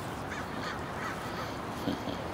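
A bird calls three times in short calls over steady outdoor background noise. A short thump comes near the end.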